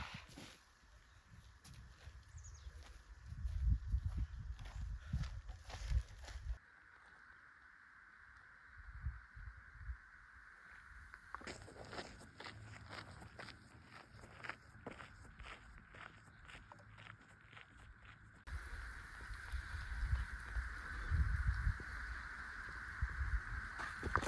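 Outdoor ambience over several cut-together shots. Low gusts of wind buffet the microphone at the start and again near the end, and a steady faint high drone runs underneath. In the middle come footsteps and small clicks on dirt and grass.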